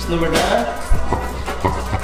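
A dog vocalising in short calls, with background music.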